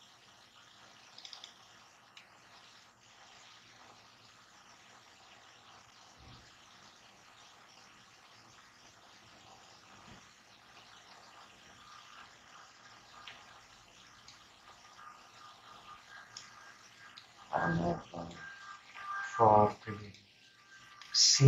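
Faint steady hiss of background noise for most of the stretch, then near the end two short bursts of a person's voice.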